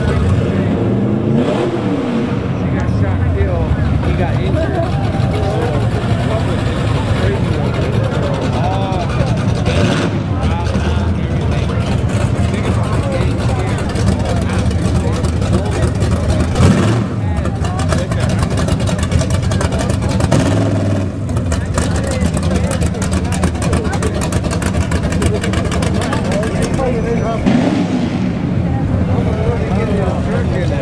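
A slow procession of classic cars driving past, their engines rumbling steadily, with a car revving up now and then: a rising engine note a second or so in, again around the middle, and near the end.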